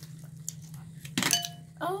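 A single clink on glassware a little over a second in, a utensil or dish knocking a glass dish and ringing briefly, over a steady low hum.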